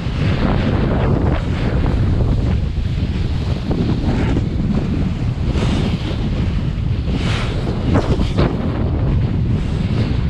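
Strong wind rumbling and buffeting an action camera's microphone while a kiteboard rides through surf, with the hiss of whitewater and several sharper splashes of spray, the loudest about eight seconds in.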